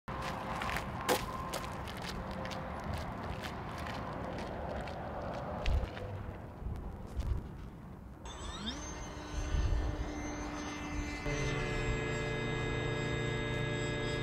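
Wind rumble with a few sharp knocks, then the electric motor and propeller of a Skyhunter RC plane spooling up with a short rising pitch and running steadily.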